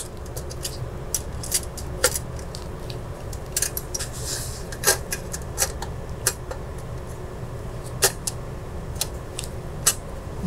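Irregular light clicks and taps of a PCIe network card and the server's metal riser cage knocking together as the card is worked into its slot, a few sharper clicks among them, over a steady low hum.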